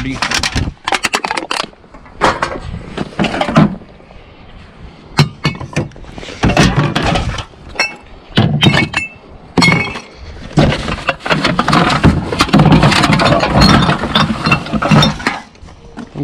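Empty glass wine and beer bottles clinking and knocking against each other as they are lifted out of a bin and sorted by hand, with many sharp clinks and stretches of rustling between them.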